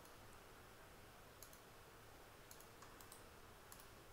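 Near silence with a few faint, scattered computer mouse clicks, made while sketch lines are being drawn.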